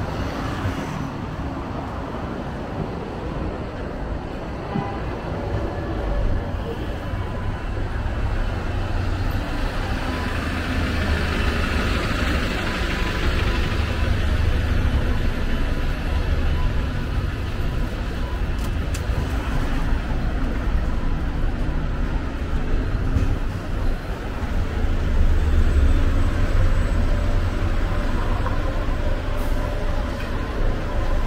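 Busy street traffic dominated by red double-decker diesel buses running and idling alongside, a steady low engine rumble that swells loudest near the end, with passers-by talking.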